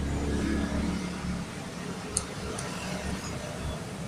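A low, steady rumble, heaviest in the first second or so, with a short sharp click about halfway through.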